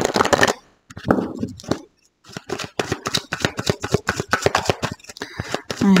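A tarot card deck being shuffled overhand by hand: a quick run of soft card flicks and slaps that starts about two seconds in and keeps going.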